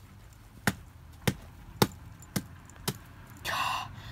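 A rock striking an apple on dry grassy ground, smashing it: five sharp strikes about half a second apart. A short breathy sound follows near the end.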